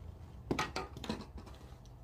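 A few light knocks and rustles of handling close to the microphone, bunched together about half a second to a second in, over a low steady room hum.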